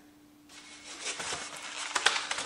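Kitchen handling noise at a counter: rustling and light knocks of a metal measuring cup and mixing bowl, starting about half a second in and building to a sharper knock at the end, over a faint steady hum.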